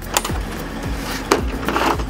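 Plastic latches of a Milwaukee socket set's case clicking open and the lid being lifted, with a sharp click just after the start and another about a second later, then a short plastic rustle. Background music with a steady beat plays underneath.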